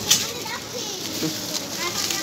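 Background voices of shoppers, a child's voice among them, with a sharp click just after the start.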